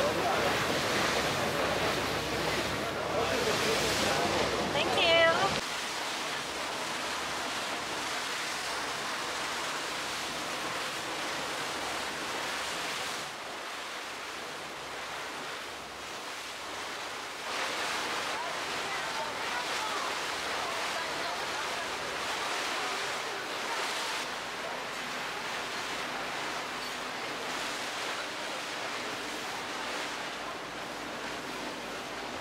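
Water rushing and splashing along the hull of a moving boat, with wind on the microphone. Louder for the first five seconds or so, then a steady, even rush.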